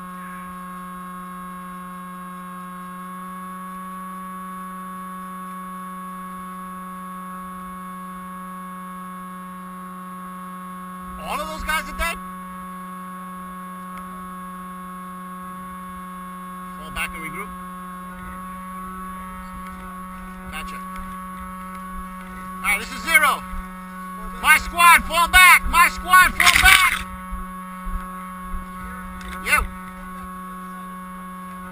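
A steady hum made of several fixed tones. Loud shouted voices break in over it about 11 seconds in and briefly around 17 seconds, then come in a longer, louder run from about 23 to 27 seconds.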